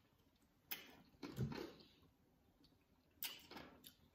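Mostly quiet, with a few faint clicks and a short low mouth sound as someone drinks water from a plastic squeeze bottle.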